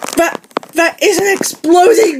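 Speech: a high-pitched voice speaking in quick phrases, with one short click about half a second in.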